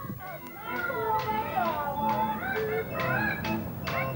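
Street puppet show: a shrill, squeaky puppet voice in quick rising and falling glides, the Petrushka voice made with a swazzle (pishchik), over steady barrel-organ music.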